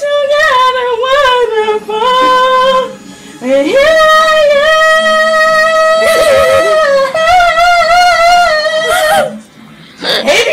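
A woman singing a cappella, loud, with vibrato, in phrases broken by short breaths. She holds one long steady note for about three seconds in the middle before a final phrase.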